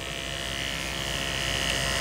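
Andis Ceramic electric hair clipper fitted with a 000 blade, running steadily with an even motor buzz and a high whine.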